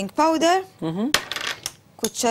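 Kitchenware clinking against a stainless steel mixing bowl: one sharp clink a little past halfway, then about half a second of bright rattling, with a voice talking around it.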